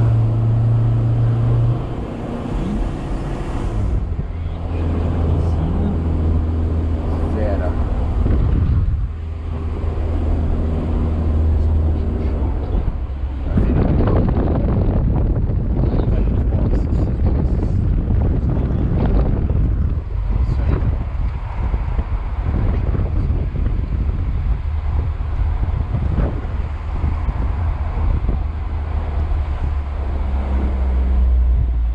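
Car engine and road noise heard from inside the cabin while driving. The engine note shifts pitch several times during the first half. After that, a heavier rumble of tyres and wind takes over, with occasional knocks.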